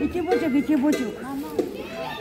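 Several nearby voices talking over one another, high-pitched.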